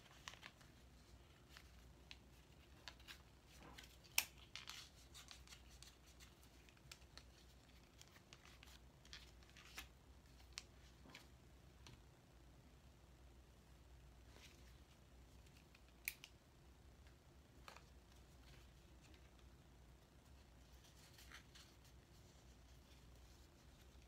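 Faint handling sounds of a small piece of cardboard being pierced and its hole widened with a pen tip: scattered light clicks, scrapes and rustles, with a sharper click about four seconds in and another about sixteen seconds in.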